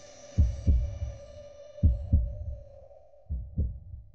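Heartbeat sound effect: three double thumps (lub-dub), one about every second and a half, over a steady held tone whose upper part fades out about halfway through.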